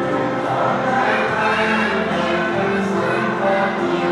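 A song with a group of voices singing together in held, sustained notes over music.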